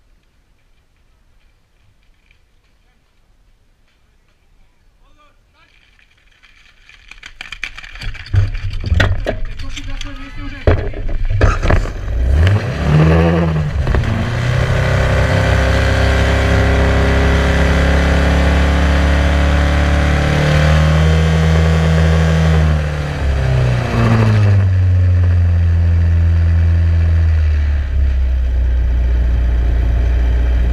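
Fire pump engine on the competition platform started and run hard, racing at high revs with a brief dip and settling lower near the end, while the team charges the hose lines with water. Several seconds of quiet come before it, then a burst of clattering equipment about seven to eleven seconds in as the team couples the hoses.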